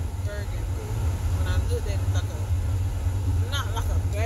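Steady low rumble of a car's engine and road noise heard inside the cabin, with a faint voice in the background.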